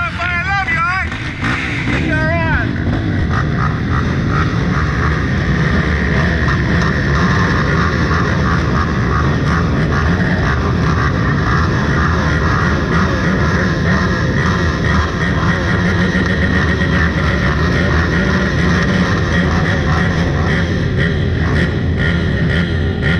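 A field of race ATV engines idling and blipping together on a start line, a dense steady drone. A warbling, voice-like sound rises and falls in the first two seconds or so.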